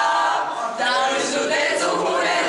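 A small mixed group of young men and women singing a song together in unison, unaccompanied.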